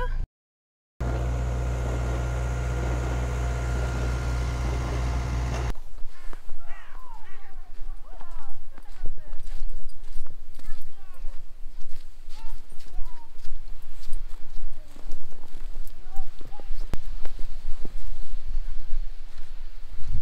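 A steady low hum for about five seconds that cuts off suddenly, then footsteps crunching through snow at a walking pace.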